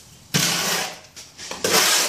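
Mixing hoe scraping and dragging through a damp sand and cement mortar mix in a metal wheelbarrow: two long gritty scraping strokes about a second apart.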